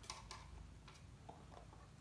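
Near silence with a few faint ticks as a hand handles the volume knob on a Bose Companion 2 Series II speaker.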